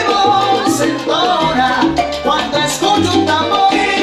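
Salsa music playing loud and continuous: a bass line of held low notes under percussion and melodic lines.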